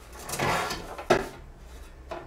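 Rusty steel case of a Soviet BA-2 battery charger being turned around on a ceramic tile floor: a scraping slide lasting about half a second, then a sharp knock about a second in as it is set down.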